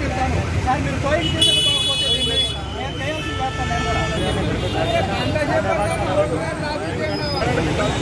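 Many people talking over one another on a busy street, over a steady rumble of traffic. A vehicle horn sounds about a second and a half in, followed by a lower horn tone for about a second.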